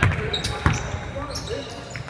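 A basketball being dribbled on a hardwood gym floor: two sharp bounces about two thirds of a second apart within the first second, in a large echoing gym.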